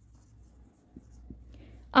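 Dry-erase marker writing on a whiteboard: a faint, scratchy rubbing of the felt tip with a few small ticks, a little louder in the second half.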